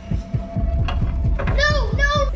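Rapid low throbbing, about five beats a second, in the manner of a heartbeat sound effect. About one and a half seconds in, a high, wavering voice-like tone joins it.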